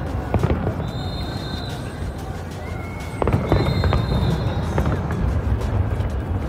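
Aerial fireworks shells bursting in sharp bangs, a pair about half a second in and a cluster around three seconds in, over a steady low rumble. Music plays along with them, with crowd voices underneath.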